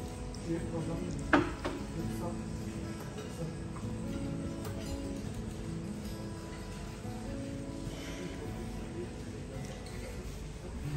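Live acoustic guitar and a man singing through a microphone and PA speaker, with a single sharp clink about a second in.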